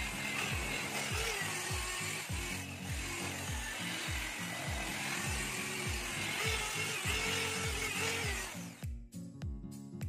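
Electric car polisher with a foam pad buffing painted bodywork with rubbing compound, a steady whirring hiss that stops suddenly near the end. Background music with a steady beat plays under it throughout.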